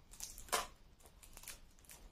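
Scissors cutting the plastic wrap on a small perfume box, with crinkling: a few soft snips and rustles, the loudest about half a second in.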